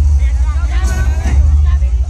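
Dance song played loudly through PA loudspeakers, a singing voice over a heavy booming low bass.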